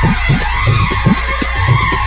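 Hindi DJ remix music with a steady bass-drum beat under a swooping synth effect that glides down in pitch and then sweeps up and back down, a skid-like sound of the kind used in DJ remixes.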